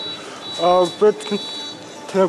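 A man speaking, with a thin high-pitched electronic beep behind his voice, repeating as long beeps about half a second each with short gaps.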